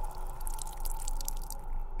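Dripping-liquid sound effect: a quick run of small drips, laid under the story as blood dripping, over a faint steady hum.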